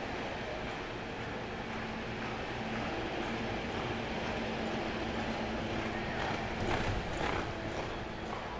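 Horse's hoofbeats on the soft dirt footing of an indoor arena, over a steady hum, with a few sharper knocks near the end.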